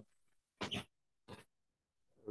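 Two short, faint breathy sounds from a person drawing breath: one about half a second in and a shorter one a little after the middle.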